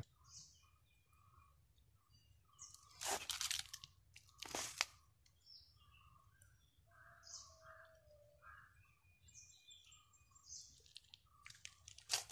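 Faint scattered bird chirps in woodland, with two crunches about a second and a half apart around three and four and a half seconds in: footsteps on dry leaf litter.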